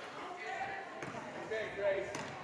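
Basketball bouncing a couple of times on a gym's hardwood floor as a player dribbles, under a murmur of crowd voices in a large hall.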